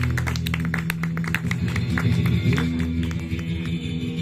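Acoustic guitar playing an instrumental passage: quick, rhythmic picked and strummed strokes over held low notes.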